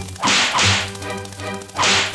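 Cartoon whoosh sound effects: three short, loud swishes, two close together near the start and one near the end, over background music.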